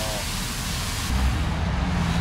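A steady rushing hiss that stops abruptly about a second in, leaving the low rumble of street traffic with a steady engine hum.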